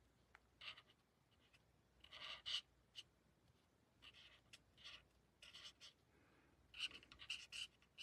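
Faint, short scratching strokes of a Stampin' Blends alcohol marker colouring on cardstock, coming in small clusters with brief pauses between them.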